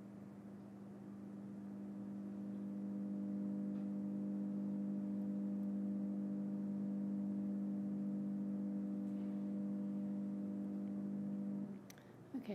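Soundtrack of a projected video played over the hall's speakers: a steady low drone of a few held tones that swells over the first few seconds and cuts off suddenly near the end.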